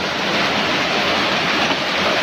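Heavy rain falling, a loud steady hiss.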